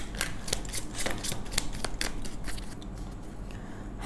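Tarot cards being shuffled and drawn by hand: a quick run of crisp card clicks and snaps that thins out after about two and a half seconds.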